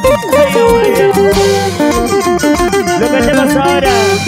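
Live band playing fast dance music: quick falling runs of picked guitar notes over a pulsing bass and drums, with a cymbal crash about a second and a half in and another near the end.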